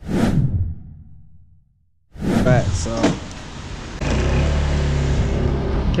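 Honda PCX 125 scooter's single-cylinder four-stroke engine catching about four seconds in and then idling steadily with a low hum. Before it, a brief noise fades away at the start.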